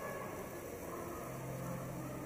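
Steady ambience of a large, quiet shopping-mall hall: a constant ventilation hum with faint far-off voices.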